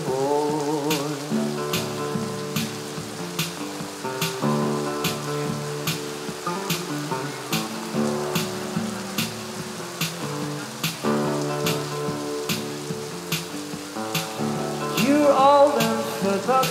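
Solo nylon-string acoustic guitar played fingerstyle in a slow instrumental passage, chords ringing and changing every couple of seconds over a faint, even tick a little more than once a second. A voice comes back in near the end.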